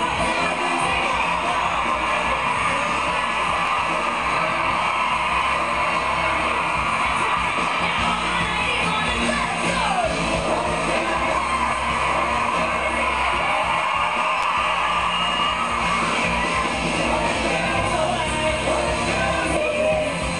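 Live pop concert music: a band playing with a female lead singer's voice over it. Near the middle, one vocal line glides downward.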